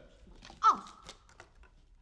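A single short word, "Al", spoken with a sharply falling pitch, followed by a few faint clicks from picture frames being handled.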